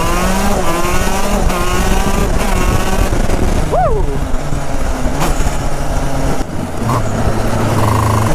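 A 125 cc two-stroke shifter-kart engine pulls hard under throttle, its note climbing in pitch through several quick gear changes. About six and a half seconds in the throttle closes and the engine falls to a low, steady note as the kart slows.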